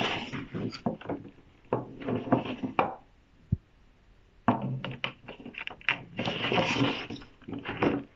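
Picture cards being slid out of and into a wooden kamishibai stage frame: a run of quick taps and knocks against the wood and the scrape of card sliding, with a quiet spell about halfway.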